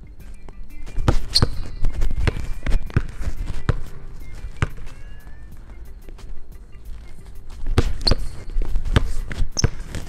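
A basketball dribbled hard and fast on a gym floor in two quick runs, one starting about a second in and another near the end, with a couple of sharp shoe squeaks, over background music.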